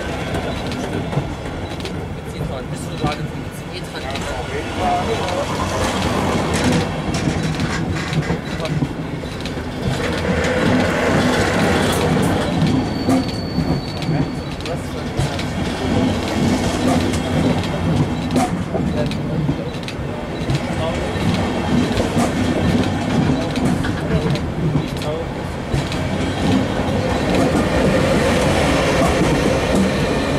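Push-pull train of TRI N-type coaches pulling out and rolling past at close range, wheels clicking over the rail joints, with a brief high squeal about halfway through. Near the end the black BR 182 electric locomotive pushing at the rear passes, and the sound grows louder.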